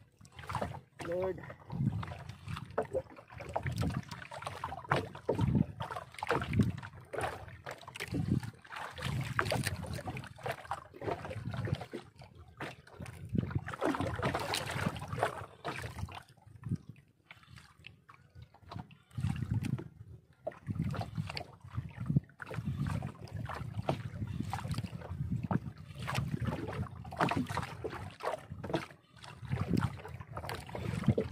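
Wind gusting unevenly on the microphone and water sloshing against the hull of a small outrigger boat on choppy sea.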